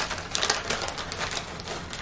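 Shiny plastic snack bag crinkling and rustling as a hand reaches in for a piece, a quick, irregular run of crackles.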